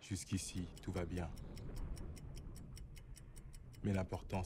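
Steady, evenly spaced ticking, about five ticks a second, like a clock, under a man's voice speaking French in short phrases.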